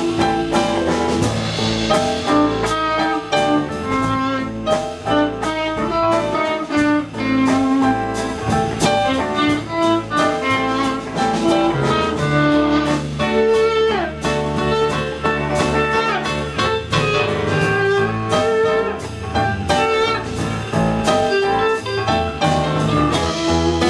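A live rock band playing an instrumental passage without singing: electric guitars, bass guitar, keyboard and drum kit together at a steady groove.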